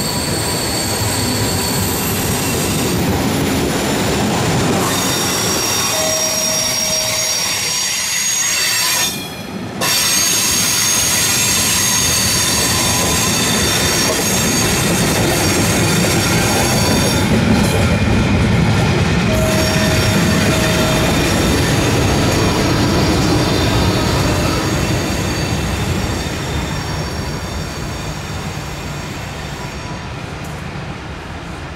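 Electric-hauled double-deck passenger train passing close by: a steady rumble of wheels on rail with clicking over the joints and high-pitched wheel squeal. The sound fades over the last few seconds as the train draws away.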